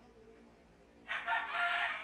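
A rooster crowing once, starting about a second in: one held call, quieter than the voice, that trails off at the end.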